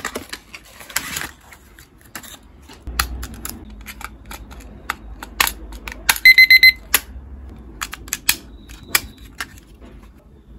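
Plastic clicks and knocks from handling a pink digital kitchen timer as a battery is fitted, then the timer gives a quick run of about six high beeps a little past the middle as it powers up. A short, fainter beep comes near the end.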